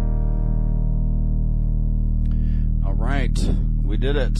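Final chord on an electronic keyboard ringing out over a steady low drone, its upper notes cutting off about three seconds in; a man's voice follows.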